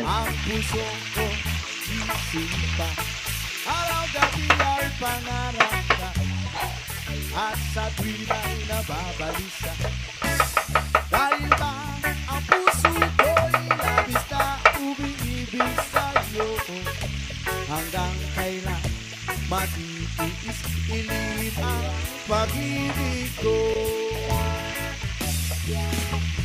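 Galunggong (round scad) frying in a pan of hot oil, sizzling and bubbling steadily. A kitchen knife chops onion and tomato on a wooden board alongside, with a quick run of chopping clicks a little before halfway through.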